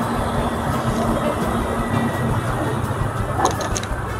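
Steady road and engine noise heard from inside a car driving slowly through town traffic. A few short high clicks come near the end.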